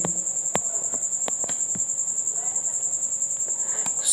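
A cricket chirping in a steady, rapidly pulsed high trill, with a few faint clicks.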